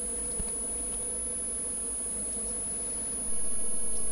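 Steady electrical hum and buzz of the broadcast audio line, with no speech. It steps up in level a little past three seconds in.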